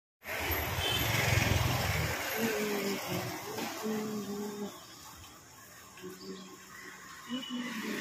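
Street ambience: a low engine rumble from traffic for about the first two seconds, then people's voices talking over a quieter background.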